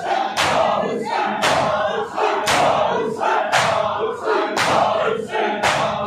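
A large crowd of bare-chested men beating their chests in unison (matam), a sharp slap about once a second, over many men's voices chanting a noha.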